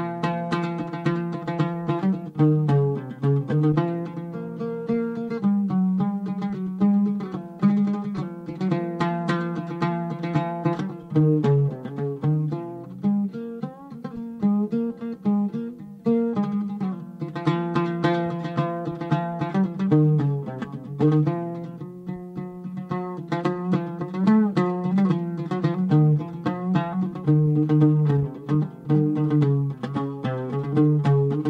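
Solo oud playing a plucked melody, a piece composed for a takht ensemble played here without the other instruments.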